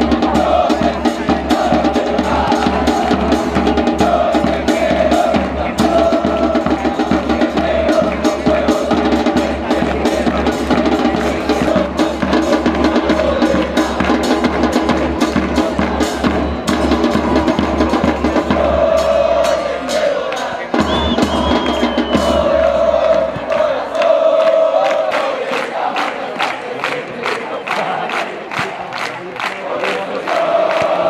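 A supporters' band in the stands: bass drum and drums beating a steady rhythm, with brass and chanting voices over it. The deep bass drum drops out about two-thirds of the way through, while the lighter beating and the chant carry on.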